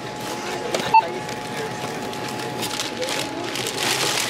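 A single short electronic beep about a second in, like a checkout barcode scanner reading an item, over a faint steady tone. Toward the end, plastic shopping bags rustle as they are handled.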